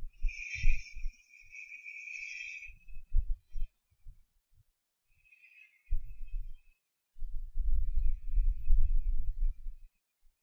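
Hot air rework station blowing in spells, a thin hiss, while reflowing the solder on a fluxed charging port. Irregular low bumps run underneath.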